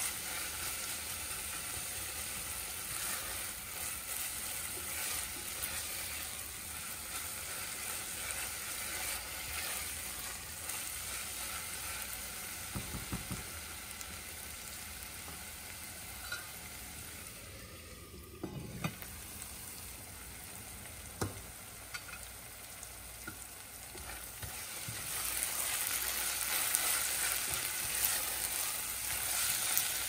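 Sliced onions, curry leaves and ginger, garlic and green-chilli paste sizzling in oil in an enamelled pot, stirred with a silicone spatula. Midway the stirring stops, with a few light knocks. The frying grows louder near the end as the stirring starts again.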